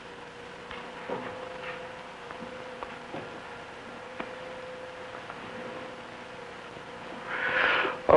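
Steady hiss and a constant low hum from an old film soundtrack, with a few faint scattered clicks and rustles. A short breathy rush comes near the end.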